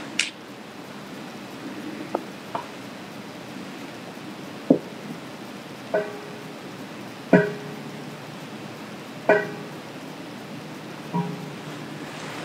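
Sparse music: a plucked string instrument playing about five slow single notes, each ringing and dying away, a second or two apart, over a steady low hiss.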